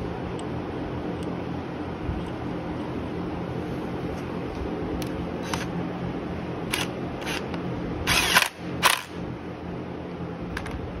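Cordless impact wrench run in two short bursts on the centre nut of a motorcycle's magneto flywheel, the second just after the first, preceded by a few light clicks of the socket going on. A steady low hum lies under it all.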